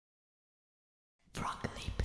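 Silence for over a second, then a whispered voice with a few sharp clicks starts: the sound effect of an animated intro logo.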